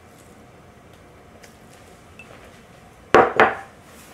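Faint scraping of a spatula in a glass mixing bowl, then two sharp knocks a little after three seconds in as the glass bowl and spatula are put down on the counter, the second with a short ring.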